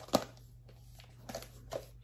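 A small gift-wrapped box being shaken in the hand: a sharp knock just after the start, then a few fainter knocks and rustles of the wrapping paper.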